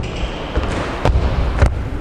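A boxing glove punch landing with a sharp smack on a coach's open palm, thrown off a quick step-in. Two sharp smacks come a little after a second in, about half a second apart, over low thuds of sneakers on a wooden floor.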